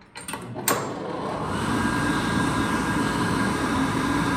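1981 Excel Dryer R76-C chrome push-button hand dryer being switched on: two clicks as the button is pressed, then the fan motor starts and builds over about a second to a steady, loud rush of air with a thin whine.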